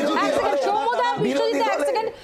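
Several voices speaking at once, talking over one another.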